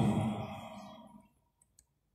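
The tail of a man's voice on the microphone fading away over about a second, then near silence with a couple of faint clicks near the end.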